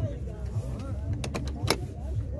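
Murmur of people talking in the background over a steady low rumble, with three short sharp clicks in the second half.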